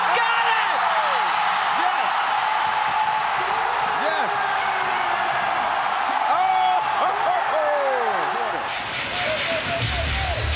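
Arena crowd roaring after a buzzer-beating game-winning shot: a dense, sustained mass of cheering and shouting voices that stays loud throughout.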